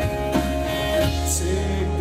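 Live pop-rock band playing an instrumental passage: a strummed acoustic guitar over a steady bass line and drums, with a cymbal hit a little past the middle.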